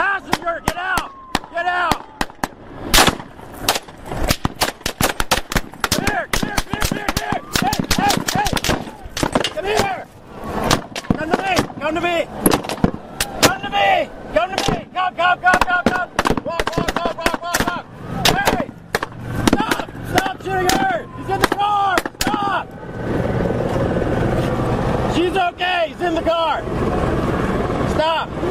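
Sustained gunfire, many shots in rapid, uneven strings, with men shouting commands over it. Near the end the shooting thins out and a steady rushing noise takes over for a few seconds.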